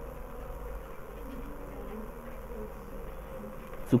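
A steady, faint electrical buzz with hiss: mains hum in the recording setup.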